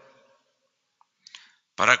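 A pause in a man's speech at a podium microphone: near silence, then a faint mouth click and a short intake of breath just before he starts speaking again near the end.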